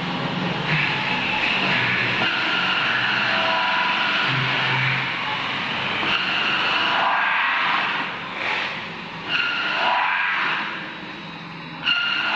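CNC metal spinning lathe forming a large sheet-metal dome: the forming roller pressed against the spinning blank gives a sustained high squeal over a low machine hum. In the second half the squeal slides in pitch and drops away twice, then comes back sharply near the end.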